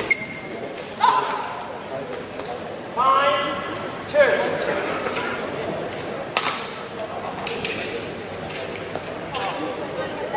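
Voices calling out across a badminton hall, two short shouts in the first half. These are followed by a sharp racket strike on a shuttlecock about six seconds in and a few fainter hits as a rally is played.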